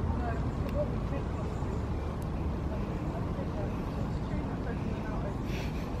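Steady low wind noise on a camera microphone that has no wind muff.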